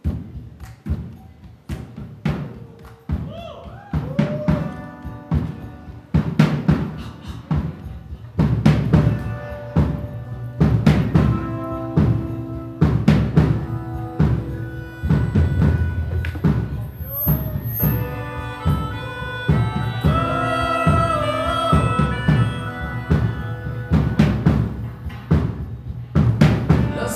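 Live band starting the instrumental intro of a rock song, with drum kit and bass under sustained pitched notes and a lead melody line. It begins suddenly and grows fuller and louder about eight seconds in.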